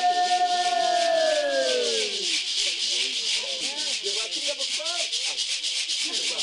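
Rattles shaken in a steady, fast rhythm with voices chanting; a long held sung note slides down in pitch and fades about two seconds in, while the shaking and lower wavering voices carry on.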